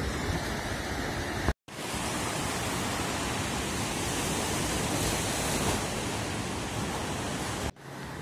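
Steady rush of ocean surf from breaking waves, cut off for an instant about one and a half seconds in and again just before the end.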